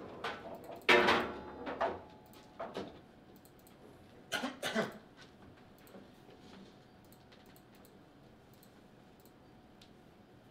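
Clatter from a foosball table after a goal: a loud knock about a second in, then a few lighter knocks and clatters over the next few seconds, then only quiet room tone.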